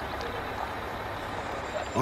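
Indistinct chatter of several voices over the steady low rumble of a bus engine.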